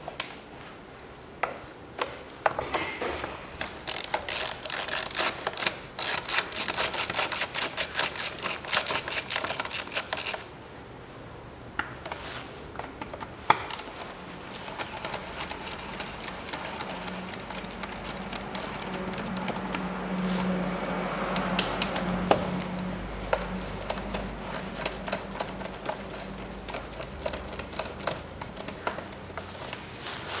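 Socket ratchet clicking in quick runs as small 8 mm bolts on the air filter housing cover are undone, with scattered clicks and knocks of the tool between runs.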